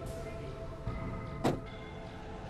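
Soft, held background music, with a single sharp car-door thump about one and a half seconds in.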